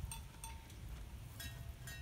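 Quiet outdoor background: a faint low rumble with a few faint, brief high tones and ticks.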